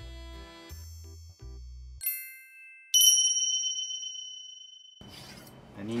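Background music stops about two seconds in, followed by two bell dings, the second louder and ringing out for about two seconds: a chime effect marking the end of the countdown to the start of cooking.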